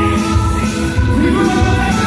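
Live amplified music from a Yamaha electronic keyboard, with sustained chords over a steady bass beat, and a man singing over it into a microphone.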